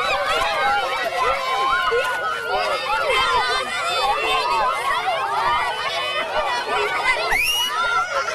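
A crowd of children shouting and chattering all at once as they run off together, many voices overlapping, with one rising squeal near the end.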